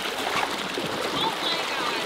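Shallow water rushing over stones and driftwood, a steady hissing rush, with a dog wading and splashing through it.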